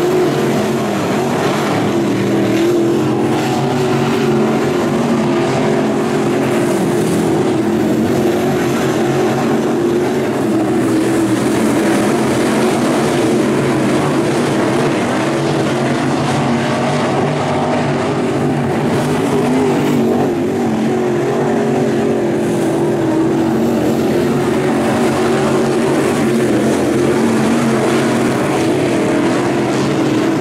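A pack of dirt late model race cars with GM 604 crate V8 engines running at racing speed, a loud, steady drone of overlapping engine notes that rise and fall slightly as the cars lap.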